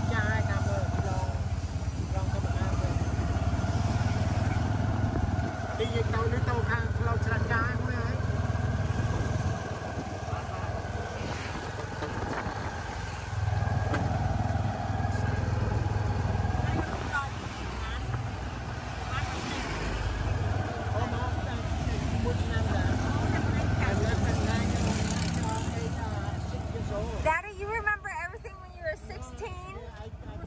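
Motorcycle-drawn tuk-tuk heard from its passenger carriage while riding along a road: the motorbike's engine hums steadily, with road and wind noise and faint voices. Near the end the engine rumble falls away and voices become clearer.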